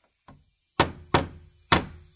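Hammer blows on wooden planks: a light tap, then, after a short pause, three hard strikes about half a second apart.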